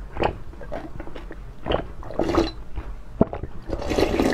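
A person drinking from a large bowl tipped up to the mouth: a run of separate gulping and slurping sounds, coming irregularly a few times a second.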